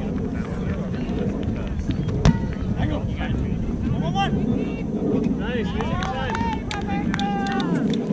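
Wind rumbling steadily on the microphone, with a single sharp thump about two seconds in: the kick of the rubber kickball. After it come distant shouts and calls from players across the field, most of them in the second half.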